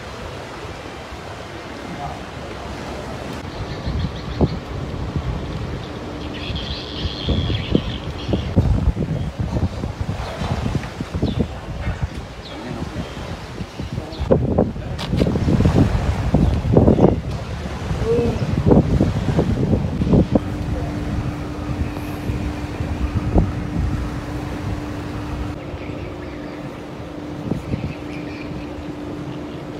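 Outdoor ambience: wind buffeting the microphone and indistinct voices, loudest around the middle. A steady low hum comes in about two-thirds of the way through.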